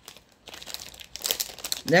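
Plastic packaging bag crinkling as it is handled, a rapid crackle that starts about half a second in and runs until a voice resumes near the end.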